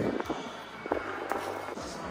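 A few light footsteps and taps on concrete over a faint, low steady hum.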